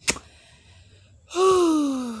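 A woman's loud, breathy sigh that falls in pitch over about a second, starting just past halfway: she is out of breath. A brief sharp sound comes right at the start.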